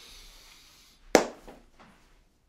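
A soft rustle, then a single sharp knock about a second in, followed by two fainter taps.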